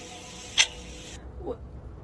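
A ticking sound effect, one sharp tick a second, with a single tick about half a second in. A faint short sound follows near the end.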